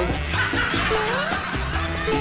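Upbeat comedic background music with a steady beat and repeated rising slides, with snickering laughter over it.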